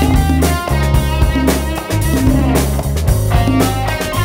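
A live soul-funk band playing an instrumental passage, with a Stratocaster-style electric guitar out front over a bass line and drum kit.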